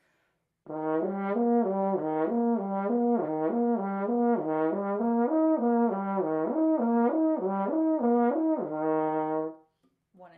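Double French horn playing a lip-slur exercise on the natural arpeggio of the harmonic series with the first valve held down, notes slurred up and down without changing fingering, several notes a second. It starts under a second in and ends on a held low note.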